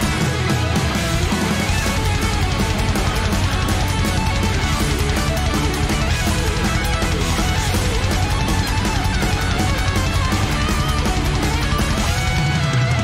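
Live heavy metal band playing a fast song, with an electric guitar lead over a dense, unbroken band backing.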